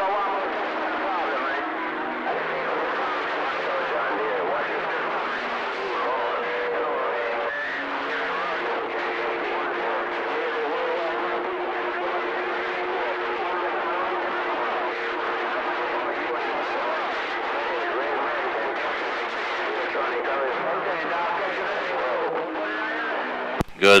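CB radio receiver on channel 6 playing a crowded, rough channel through its speaker: many strong stations transmitting over one another, with garbled overlapping voices, static and steady heterodyne whistles that hold for seconds and shift pitch. It cuts in abruptly and drops out just before the end.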